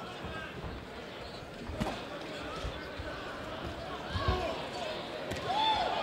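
Ringside sound of a boxing bout: faint shouting voices over a crowd murmur, with a sharp thud a little under two seconds in and a duller thump past four seconds from gloves and footwork in the ring.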